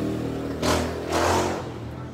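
A vehicle engine running with a steady hum that fades out about half a second in, followed by two short rushes of hiss.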